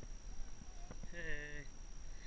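A person's voice: a short held vocal sound of about half a second, starting about a second in, with a fainter voice-like tone just before it.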